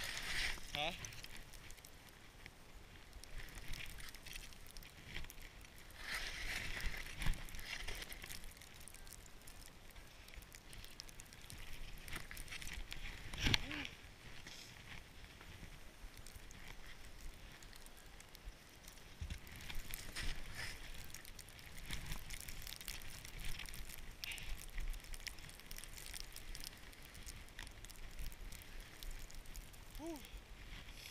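Skis swishing over snow in irregular surges, with a short vocal sound about 13 seconds in.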